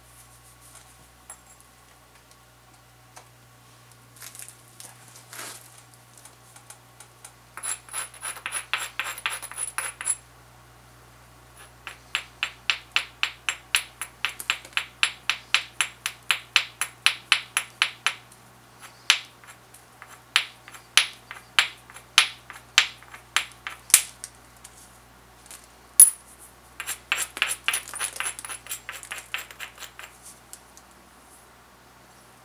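A stone abrader rubbed back and forth along the edge of an obsidian knife preform, in runs of quick gritty scraping strokes, about four a second at its steadiest, with short pauses between runs. This grinds down the thin edge to make strong striking platforms before flakes are pressed or struck off.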